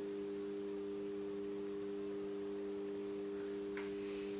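A steady low hum of a few pure tones held without any change, with no other sound over it.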